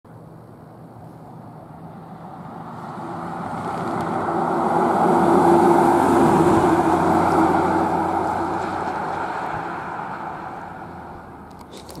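Fire department battalion chief pickup truck driving past, its tyre and engine noise swelling to a peak about halfway through and then fading as it goes by.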